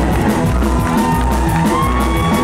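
Live rockabilly band playing loud, with hollow-body electric guitars over a drum kit.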